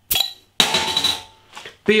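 A glass beer bottle's crown cap prised off with a bottle opener: a sharp click, then about half a second later a longer noisy sound with a ringing edge that lasts most of a second.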